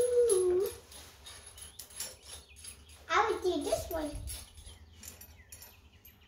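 A young child's voice, two short high-pitched vocalizations at the very start and about three seconds in. In the gaps are faint metallic clicks of flat washers and nuts being handled onto U-bolts.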